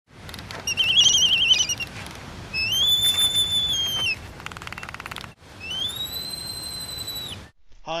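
A series of high whistled tones over a steady hiss. First comes a warbling note, then a long held note that slides up at its start, a short buzzy rattle, and a second long note that glides up and cuts off abruptly.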